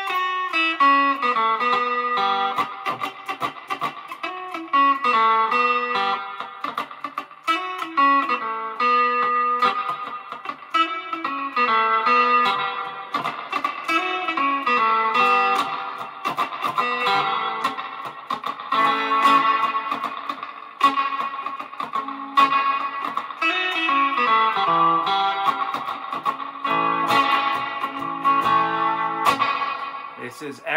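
Clean electric guitar played through a Wampler Faux Spring Reverb pedal into a Fender Mustang I amp: a picked riff repeated with variations, its notes ringing on in a reverb wash. The pedal's controls are being turned up mid-riff until all are maxed out near the end.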